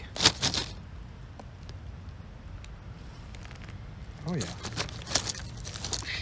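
A crinkly potato-chip bag rustling as a hand reaches in for chips, with a few sharp crackles at the start and again near the end.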